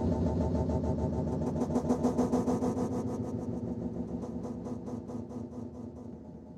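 The closing sound of an electronic track: a low, buzzing synthesizer drone with a fast, even pulsing, fading away.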